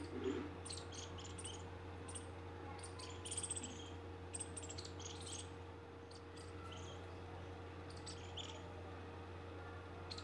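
Faint outdoor ambience: many short, high chirps of small birds at irregular intervals, over a steady low hum.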